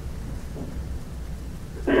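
Steady low rumble with a faint hiss: the background noise of the room and recording.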